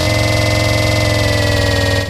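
A loud, sustained buzzing synthesizer tone, sinking very slightly in pitch: a transition effect between segments of a DJ mix.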